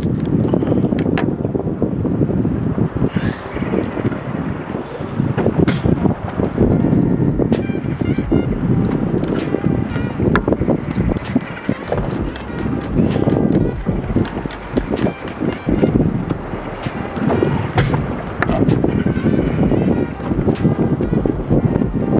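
A chef's knife chopping garlic on a plastic cutting board, with irregular knife taps throughout, over background music.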